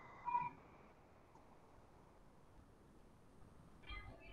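Near silence: faint room tone over a call line, broken by a brief faint pitched sound about half a second in and another right at the end.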